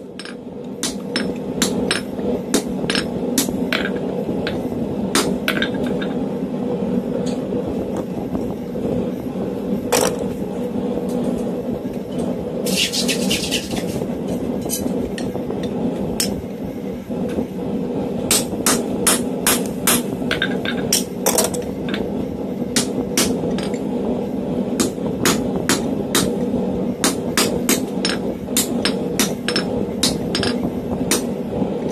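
Hand hammer striking red-hot round steel stock on an anvil in irregular runs of ringing blows, with short pauses between runs, over the steady hum of the forge and a fan. About thirteen seconds in, a short high hiss lasts over a second.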